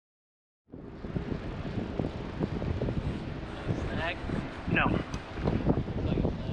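Silence, then about a second in, wind buffeting the microphone on an open boat, with a few short falling vocal exclamations around the fourth and fifth seconds.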